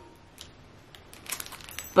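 A clear plastic zip bag crinkling as it is handled, in a run of short crackly rustles starting about a second in.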